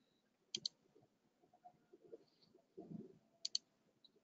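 Faint computer mouse clicks: two quick double clicks, about three seconds apart.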